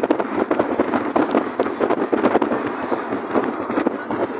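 Irregular crackling rush of wind and road noise buffeting a phone microphone from a moving car's open window, easing slightly near the end.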